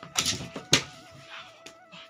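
Two Labradors scuffling in play at close range: a rustling scramble, then a sharp knock just under a second in and a smaller click later, over a soft, simple background melody.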